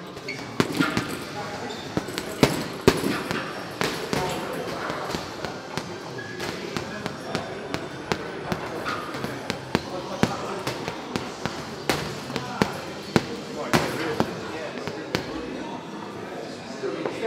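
Boxing gloves punching a Ringside heavy bag in fast, irregular combinations: a run of sharp thuds and slaps, several a second, with some harder single shots standing out.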